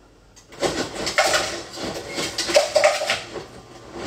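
Ice clattering out of a refrigerator's door ice dispenser, starting about half a second in and running on in uneven rattling spurts.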